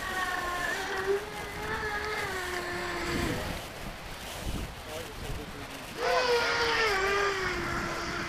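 A Spin Max 2810 brushless motor turning a three-blade propeller on an RC seaplane, heard in flight with a steady whine and wind rush. About three seconds in the throttle comes back and the whine falls in pitch and fades. About six seconds in it is throttled up again, jumping back louder and higher before settling.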